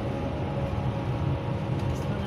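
Interior noise of a moving bus: a steady low rumble of engine and road noise heard inside the passenger cabin.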